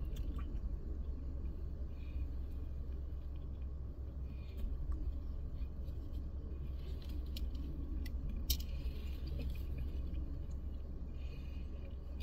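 Two people chewing and biting into fried fish sandwiches, with scattered short soft crunches and mouth clicks, over a steady low hum inside a car's cabin.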